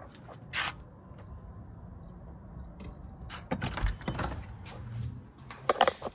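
A door being opened and a person walking through it, with scattered knocks and clatters, the sharpest cluster near the end, over a low steady rumble.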